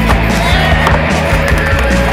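Music with a steady bass line over a skateboard's wheels rolling on a concrete bowl, with sharp clacks of the board on the concrete and coping.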